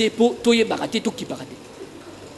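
A man's voice speaking, with a few drawn-out syllables held at a steady pitch, trailing off into quiet room tone after about a second and a half.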